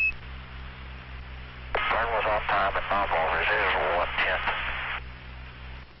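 Air-to-ground radio link: a short high beep, then static hiss with a steady hum. About two seconds in, a muffled, narrow-band voice replies over the radio for about three seconds, too garbled to make out, before the hiss returns.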